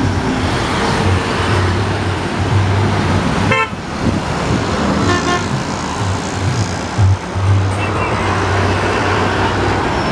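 Road traffic with buses passing close by, engines rumbling steadily. A vehicle horn sounds briefly about three and a half seconds in and again around five seconds in.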